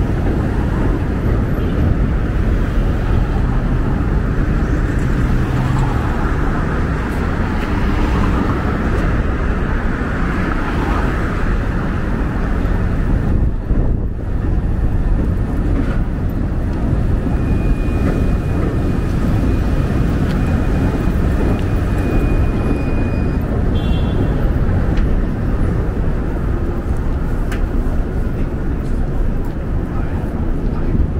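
City street traffic: a steady, loud rumble of passing vehicles, with a thin high tone held for several seconds past the middle.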